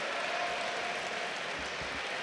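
Audience applauding, a steady even wash of clapping.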